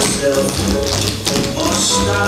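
Tap shoes of a group of dancers striking the stage together in quick rhythmic taps, over a recorded pop song.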